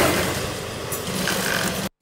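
Sewing machine running, stitching steadily at speed; the sound cuts off suddenly near the end.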